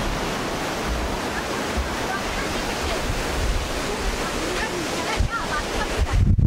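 Ocean waves breaking on a sandy beach: a steady rush of surf, with wind rumbling on the microphone.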